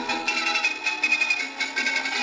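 Pathé Diamond portable suitcase gramophone playing a record through its reproducer and tonearm: recorded music that sounds thin, with no deep bass.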